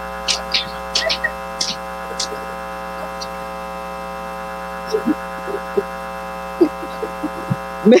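Steady electrical mains hum with a buzzy stack of overtones, holding one unchanging pitch throughout, with a few faint short sounds scattered over it.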